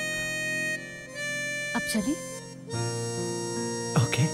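Background film score: a slow melody of long held notes with a reedy, wind-instrument character, changing note every second or so. A brief vocal sound cuts in about halfway through and again near the end.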